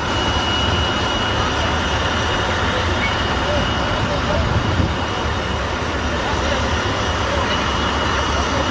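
Steady engine noise with a strong low rumble and a continuous high whine throughout, with faint voices beneath.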